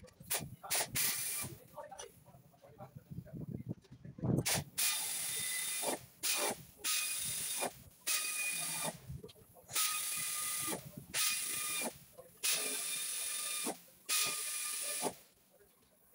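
Pneumatic air ratchet run in a string of hissing bursts, each about a second long with short pauses between, undoing the bolts that hold a car's engine undertray.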